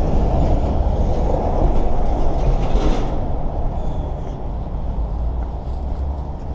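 Road traffic rumble as a heavy lorry drives past close by, swelling about two to three seconds in and then fading.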